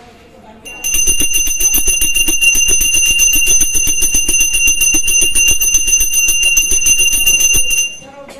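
A puja hand bell rung rapidly and without a break, starting about a second in and stopping just before the end.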